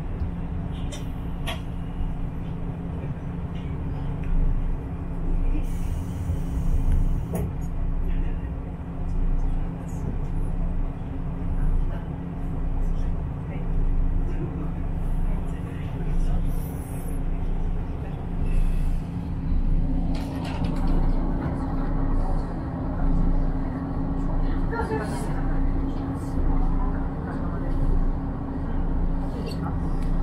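The diesel engine of a KiHa 54 railcar running with a steady low drone, heard from inside the passenger cabin, with a slow rhythmic throb underneath. About two-thirds of the way through, the running noise grows louder and brighter.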